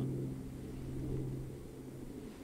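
A faint, steady low hum holding one pitch, fading out about one and a half seconds in.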